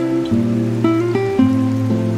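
Background music: an acoustic guitar playing plucked notes in a steady, flowing melody.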